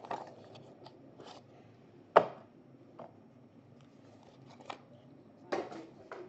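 Scattered clicks and taps of a boxed trading-card pack being opened and its cards handled. There is one sharp click about two seconds in and a couple of smaller ones near the end.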